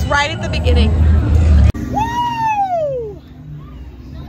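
Chatter over a low rumble, cut off abruptly a little under halfway; then a long rising-then-falling "whoo" from a roller coaster rider.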